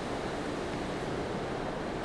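Steady hiss of a voice-over microphone's background noise, even throughout, with no other sound in it.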